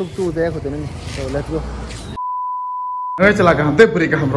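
A man speaking, broken about two seconds in by a single steady beep, about a second long, that blanks out all other sound: an edited-in bleep tone. Speech resumes right after it.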